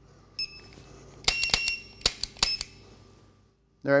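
Electronic shot-timer start beep, then about a second later a quick run of five or six sharp dry-fire trigger clicks from a Taurus G2 PT-111 pistol shooting a laser training cartridge. Short electronic beeps are mixed in among the clicks, and the shooting carries on past the first three shots because the headshot is missed.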